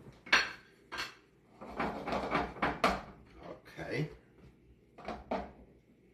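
Metal utensil clinking and scraping against a pan as food is cooked: a sharp clack about a third of a second in, a run of clatter through the middle, and a few more knocks near the end.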